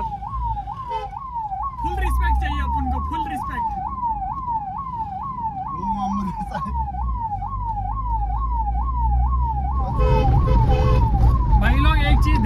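Ambulance's electronic siren wailing rapidly up and down, about two and a half sweeps a second, heard from inside the ambulance's cabin over the low rumble of the engine.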